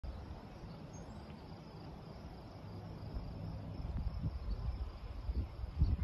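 Rushing of a brown, flood-swollen river heard from a distance as a steady wash, with faint steady insect chirring above it. A low, uneven rumble grows louder over the last few seconds.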